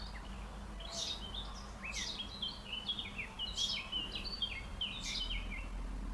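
Songbirds chirping and twittering: sharp high chirps about once a second, and a quick run of short stepping notes from about two to five seconds in.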